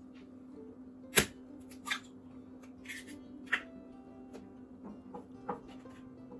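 A wooden spoon and a small bowl knocking and scraping against a frying pan of tomato sauce, with one sharp knock about a second in and a few softer taps after, over a steady low hum.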